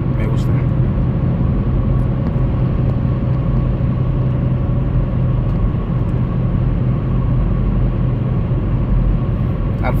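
Steady engine and road noise of a vehicle cruising along an open road: a constant low rumble with an even hum over it.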